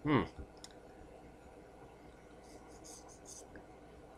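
A man's short "hmm" falling in pitch, then quiet room tone with a few faint clicks about two and a half to three and a half seconds in.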